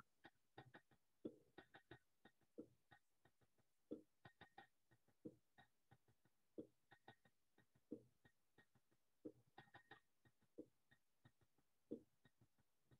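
Faint recorded drum playing an embellished Masmoudi rhythm: low strokes about every 1.3 s, with lighter, higher strokes filling the beats between them.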